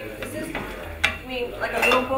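Kitchen utensils clinking and knocking against a metal stockpot, with one sharp knock about a second in.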